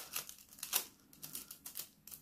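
Holographic nail transfer foil crinkling in quick, irregular crackles as it is pressed onto a tacky foil-gel nail and peeled away.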